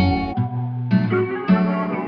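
Western-style music from a sample loop: plucked guitar notes over bass, with new notes struck about a second in and again half a second later.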